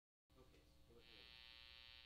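Near silence, then about a quarter second in a faint steady electrical hum and buzz from the idle guitar amplifier and fuzz pedal chain.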